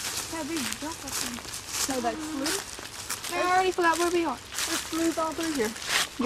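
Indistinct women's voices talking, over footsteps crunching through dry leaf litter.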